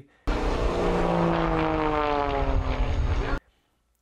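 Propeller airplane flying past at speed, its engine note falling steadily in pitch as it goes by. The sound cuts in suddenly a quarter second in and cuts off abruptly just over half a second before the end.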